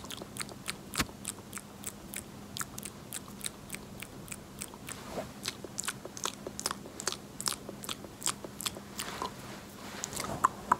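Close-miked ASMR mouth sounds: a run of short, crisp, wet clicks and pops at about three a second, slightly uneven.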